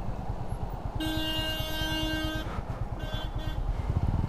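A vehicle horn sounds one steady note for about a second and a half, then gives a shorter, fainter honk about a second later. Underneath, a motorcycle engine runs at low speed.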